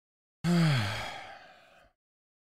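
A man's voiced sigh, about half a second in, falling in pitch and fading away over about a second and a half.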